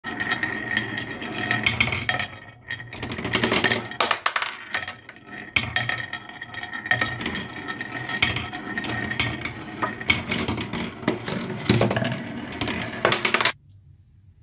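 Glass marbles rolling down a HABA wooden zigzag slope in a marble run: a continuous rolling rumble on the wood with many quick clicks and clacks as the marbles strike the curved walls and each other. It stops suddenly near the end.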